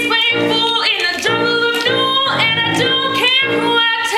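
A woman singing a show tune solo over instrumental accompaniment, in short held notes that break about every half second.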